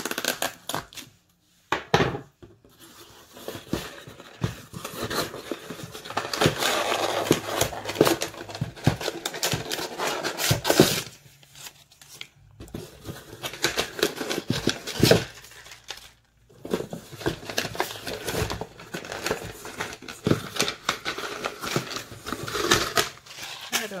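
Paper and cardboard packaging being handled and opened: irregular crinkling, rustling and tearing of a shipping box and paper seed envelopes, with a few brief pauses.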